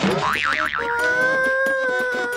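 Cartoon-style comedy sound effect cued to a slap on the head. A short hit at the start, then a wobbling 'boing' tone that warbles up and down a few times before settling into one steady held note.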